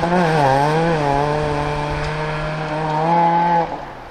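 Ford Fiesta rally car's engine running hard at high revs as the car drives away on a snowy gravel stage. Its pitch dips and wavers briefly about half a second in, then holds steady and rises slightly. Near the end the sound drops away suddenly, leaving a fainter hiss.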